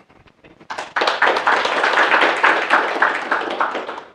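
An audience clapping as a talk ends. The applause starts about a second in as dense, many-handed clapping and dies away near the end.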